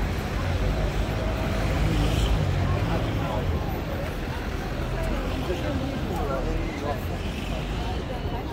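Street ambience of people talking amid passing road traffic, with a low vehicle rumble that swells about two seconds in and eases off after about three and a half seconds.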